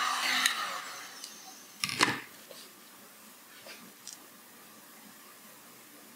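Handheld electric heat gun blowing on its high setting with a steady hum, switched off and winding down within the first second. About two seconds in there is one sharp knock, the loudest sound, followed by a few faint handling taps.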